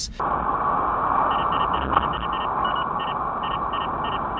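A radar detector beeping out an alert: short high tones, three to four a second with uneven spacing, starting about a second in. They sound over steady road and engine noise inside a moving car, heard through a dashcam's narrow-band microphone. The alert is of the kind that Cobra radar detectors in other cars set off as a Ka-band false alert.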